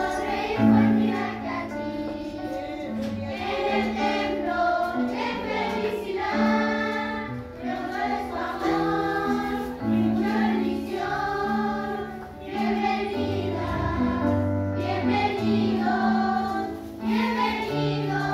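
A children's group singing a Christian song together over an instrumental accompaniment with a steady, moving bass line.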